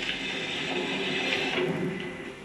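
Steady mechanical noise of a fairground ride running, which eases off about a second and a half in.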